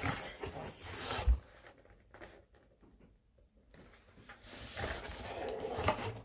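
Cardboard drink box being handled: a rub and a thump about a second in, a quiet stretch, then rustling and a knock near the end as it is set down on the desk.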